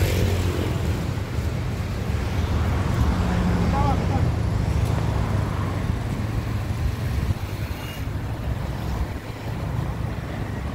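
Outdoor street noise: a steady low rumble of road traffic and idling vehicles.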